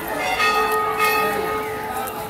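Brass Hindu temple bells being rung over and over, several strikes overlapping so that their ringing tones carry on without a break.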